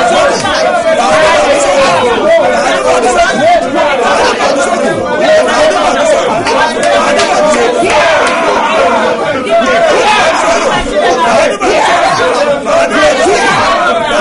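A man and a woman praying aloud at the same time, their loud voices overlapping without a pause.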